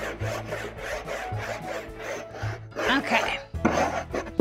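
A large stick of chalk scrubbed back and forth on a chalkboard wall to shade an area in, with scratchy strokes about three a second.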